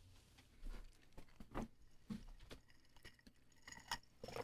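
Near silence: room tone with a few faint, short, scattered clicks and small handling noises.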